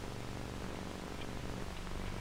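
Steady low hum with faint hiss: the background noise of an old film soundtrack, with no narration over it.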